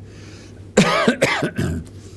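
A man coughing and clearing his throat: a short run of three or so coughs about a second in.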